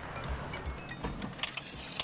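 Quiet background music with a few soft low beats, and a light metallic jingling that begins a little past halfway.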